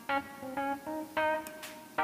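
Background music: a slow run of single plucked guitar notes, each one ringing and fading before the next.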